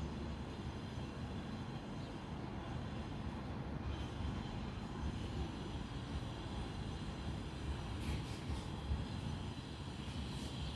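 Steady low outdoor rumble with no distinct events, with a few faint high sounds near the end.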